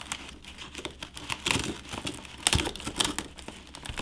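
Cracked tablet display glass crackling and snapping as a thin metal pry tool is pushed in under its edge, prying the screen away from its adhesive. The crackles are small and irregular, with a few sharper snaps about halfway through.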